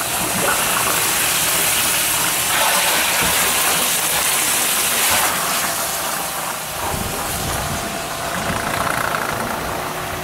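An engine runs steadily while a pump rushes water through hoses into a tank of rock salt, churning it into brine.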